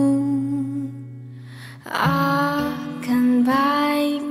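A female singer performing an Indonesian-language pop song with musical accompaniment. A held note dies away, and about two seconds in she starts a new sung phrase.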